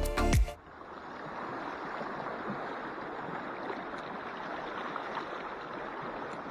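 Background music that cuts off about half a second in, then the steady rush of a shallow river's water flowing over riffles.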